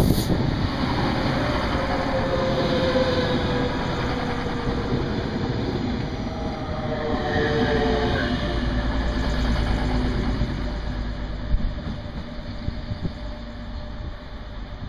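ICE TD diesel multiple unit pulling into a station and passing close by at low speed: engine and wheel rumble on the rails with a faint whine that drops slowly in pitch as it slows, growing quieter near the end as it moves away.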